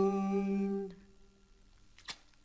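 A woman's voice holding the song's last note at one steady pitch, unaccompanied, and stopping about a second in, leaving faint room tone.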